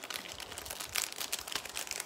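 Plastic jewelry packaging crinkling as it is handled, a dense, irregular run of small crackles.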